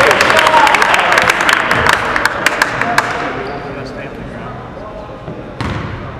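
Voices and a basketball bouncing on a hardwood gym floor, with many sharp clicks in the first three seconds. The sound then dies down, with one thud shortly before the end.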